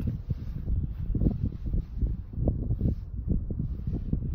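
Wind buffeting the microphone: a low, uneven, gusty rumble.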